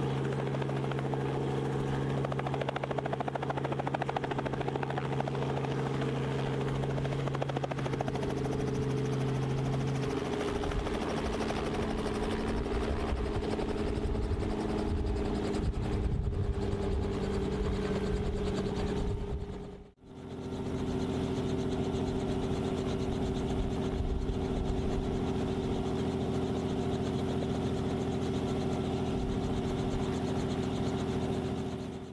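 Robinson R44 helicopter running steadily, with its rotors turning and its six-cylinder Lycoming piston engine going, as it hovers and sets down. The sound shifts about a third of the way in. About two-thirds of the way through it fades out briefly and comes back.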